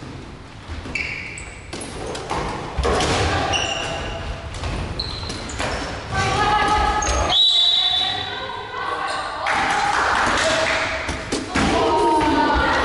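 Dodgeballs bouncing and thumping on a wooden gym floor in a dodgeball game, with short high squeaks and players calling out, all echoing in a large sports hall.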